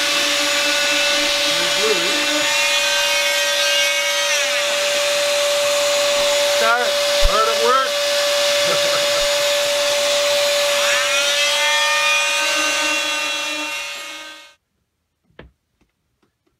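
Electric motor running steadily; its pitch drops about four seconds in and climbs back up about eleven seconds in, then it cuts off shortly before the end. A brief voice is heard about halfway through.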